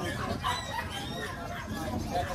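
Low background talk with a faint, high, gliding animal call about half a second in.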